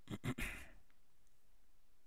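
A man's short sigh, an audible breath out that fades within the first second, followed by quiet room tone.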